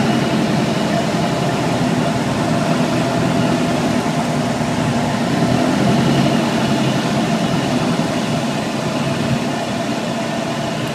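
Van's RV-6 light aircraft's piston engine and propeller running steadily from inside the cockpit on final approach to land. The sound eases slightly near the end.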